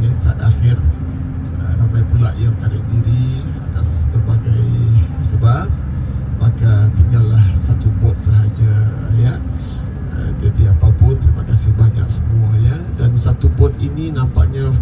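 A man talking into a microphone over a bus's loudspeakers, with the low rumble of the bus underneath.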